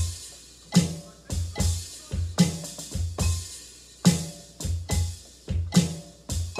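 Electronic drum kit played in a slow, steady groove: kick drum and snare, with a loud accented stroke about every 1.7 seconds.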